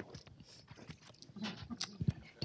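Faint scattered clicks, knocks and shuffling from a small group of people moving into place, with faint murmured voices.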